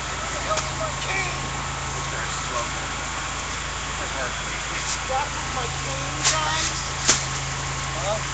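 A motor vehicle engine idling steadily under street noise, with faint voices in the background. Two sharp knocks come near the end, less than a second apart.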